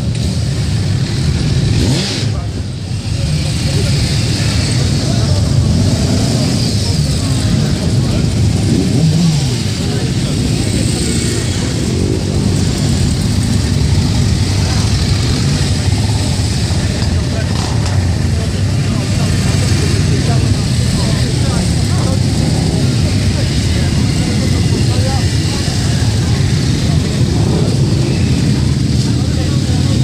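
Many motorcycle engines, mostly cruisers, running together at low revs as a column of motorcycles rides slowly past, a steady, loud mix of engine sound.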